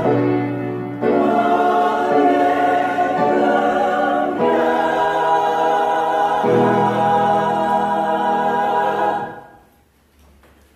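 Church choir singing a slow anthem in sustained chords, changing chord a few times. The last chord is held for a couple of seconds and released about nine seconds in.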